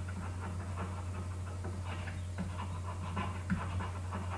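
Faint, irregular scratching and tapping strokes of a digital pen writing on a tablet, over a steady low electrical hum.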